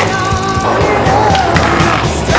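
Skateboard wheels rolling on rough pavement, with short clacks of the board, heard under loud background music.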